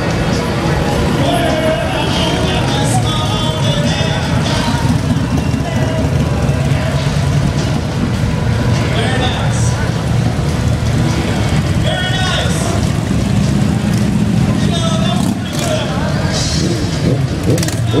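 Several motorcycles running as they cruise slowly past one after another, a continuous low engine sound, with crowd voices and music over it.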